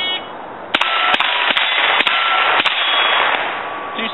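A shot timer's start beep, then five rapid gunshots in about two seconds, each clanging off steel targets that ring on briefly after the hits.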